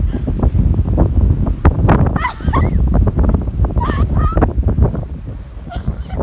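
Strong wind buffeting the phone's microphone in a blizzard, a continuous heavy rumble. Two short high, wavering vocal cries cut through it, about two seconds in and again about four seconds in.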